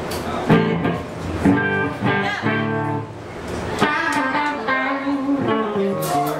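Electric guitar through an amplifier picking out a few loose notes and short phrases with no steady beat, the kind of noodling a guitarist plays on stage between songs.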